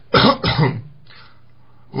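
A man clears his throat once, a short rough sound under a second long near the start, followed by a faint breath.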